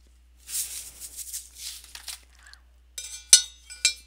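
A plastic spoon clinking and knocking against a small stainless steel pot during the last second, the pot ringing after each hit, with one sharp knock among them. It is preceded by a couple of seconds of a rustling, shaking sound.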